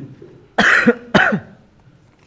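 A person coughing twice, two loud short coughs about half a second apart near the middle.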